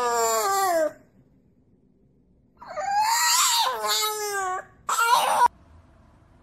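French bulldog howling in long, crying calls: one falling in pitch in the first second, a longer one rising then falling a few seconds in, and a short last call that cuts off suddenly near the end.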